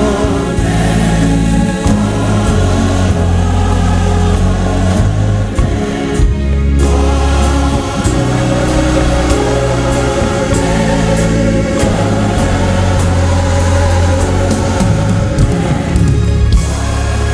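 Gospel music with choir singing over a deep bass and light, regular percussion. It breaks off briefly about six seconds in and then carries on.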